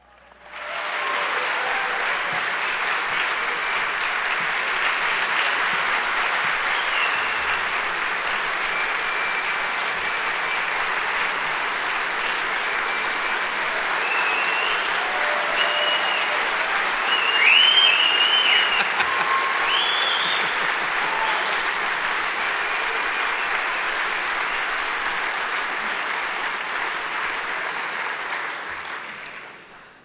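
Large audience applauding for about half a minute, swelling a little about halfway through, then dying away just before the end.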